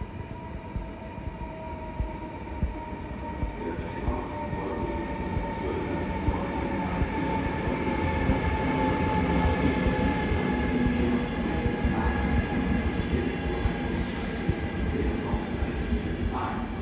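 A passenger train moving through the station: a rumble with a steady whine that slowly falls in pitch, growing louder toward the middle, with scattered clicks from the wheels on the track.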